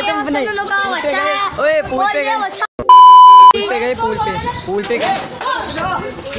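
Several men's voices talking and shouting over one another. About halfway through, a loud, steady, high-pitched beep lasting under a second cuts in over them, after a brief drop to silence: a censor bleep laid over a word.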